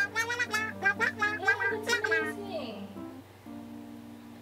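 Wordless, jabbering voice-like sound of the caller on the other end of the phone for about two and a half seconds, then stopping, over soft background music with held notes.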